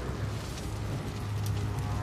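Sound-effects bed of a steady low rumbling drone with a crackling hiss of flames over it.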